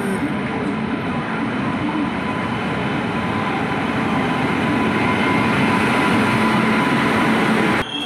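Indian Railways passenger train pulling into a station platform: the electric locomotive and then the coaches roll past with a steady rumble of wheels on rails that grows a little louder as the coaches draw level.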